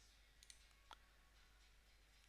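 Near silence: room tone, with two faint computer mouse clicks about half a second and a second in.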